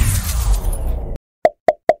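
Editing sound effects for a paint-splash screen transition: a rushing, splashy whoosh that fades out about a second in, followed by three quick pitched pops in a row near the end.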